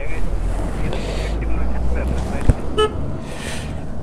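A short vehicle horn beep just before three seconds in, over a steady low rumble of wind on the microphone, with a single click shortly before the beep.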